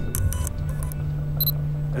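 A video camera clicks a few times, then gives one short high electronic beep about one and a half seconds in, over a low, steady music drone.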